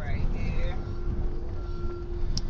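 Low rumble of a car cabin on the move, with a person's voice in the first half second. A steady tone starts about half a second in and holds.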